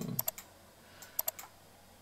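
Two quick clusters of sharp clicks at a computer, about a second apart, over quiet room tone.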